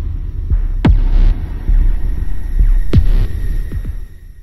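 Logo-intro sound design: a deep, throbbing bass rumble with two heavy impact hits about two seconds apart, each dropping in pitch with a short hiss trailing after it.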